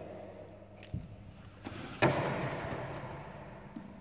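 Thumps of hands and feet on a wooden gym floor during a back walkover: a soft knock about a second in, then a loud slap about two seconds in that echoes and fades around the hall.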